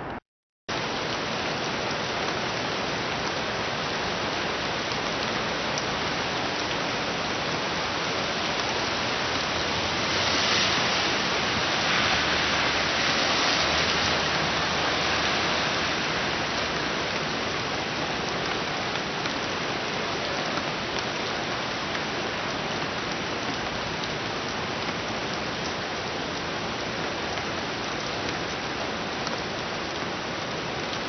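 Steady rushing water noise that swells a little from about ten to fifteen seconds in, after a brief dropout right at the start.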